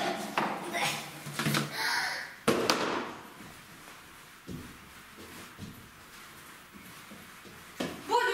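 Knocks and scuffs of shoes being taken off, with brief voices. About halfway it turns quieter, with a few faint soft thuds of bare feet hopping on a hopscotch mat.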